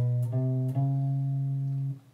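Electric guitar playing three single notes on the low E string at frets 7, 8 and 9, stepping up a semitone each time, with the fretting fingers kept down. The third note is held and then cut off sharply near the end.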